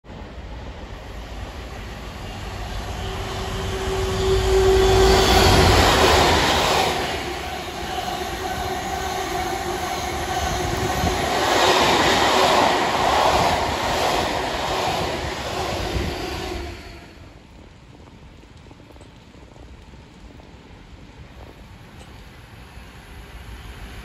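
A train running through at speed, hauling two new Merseyrail Class 777 electric units. The rumble and rush of wheels on rail build to a loud peak about five seconds in, with a steady droning note, then stay loud while the wagons pass until about sixteen seconds in. The sound then drops suddenly to a much quieter station background.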